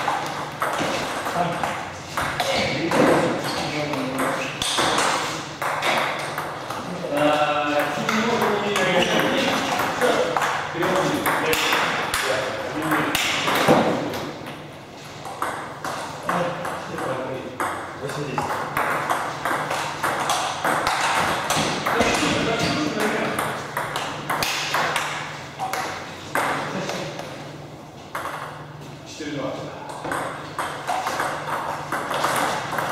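Table tennis balls clicking off tables, paddles and the floor, from more than one table in the hall, with people talking in the background.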